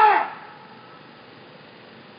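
A man's loud voice drawing out the end of a word, cut off a quarter-second in, then a low, steady street background with no voice.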